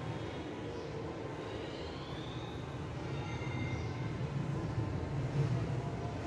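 A steady low rumble, with faint squeaks of a marker writing on a whiteboard in the middle.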